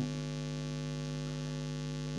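Steady electrical hum with a stack of evenly spaced overtones, unchanging throughout: mains hum in the recording.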